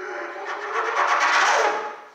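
Trumpet played with an extended technique: mostly air noise through the horn with only a faint pitch beneath it. The sound swells over about a second and falls away near the end.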